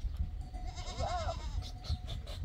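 A young goat bleating once, about a second in: a short call that rises and falls.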